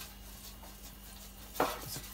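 Faint swishing of a pastry brush spreading olive oil across a stainless steel baking tray, over a steady low hum.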